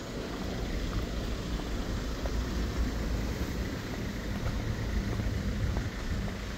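Steady low rumble and hiss of wind on the microphone as the camera moves along a paved path, with no distinct events.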